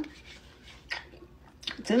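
Quiet chewing and wet mouth clicks of someone eating a soft, chewy fruit roll-up, with a spoken word near the end.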